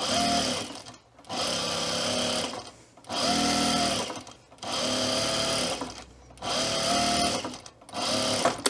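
Juki sewing machine stitching in about five short runs of about a second each, stopping briefly between runs while the fabric is turned along a curved edge.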